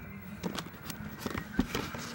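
Rustling and a handful of irregular clicks from toys in plastic-and-card packaging being handled right next to the phone's microphone.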